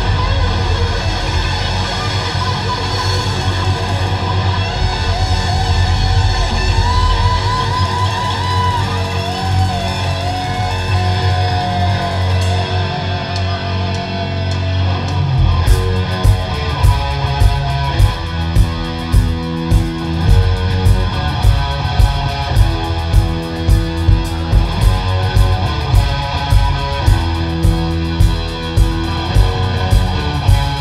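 A live rock band playing an instrumental section led by electric guitar. In the first half a lead guitar line wavers and bends in pitch. About halfway through, the drum kit and bass come in with a steady beat of about two hits a second.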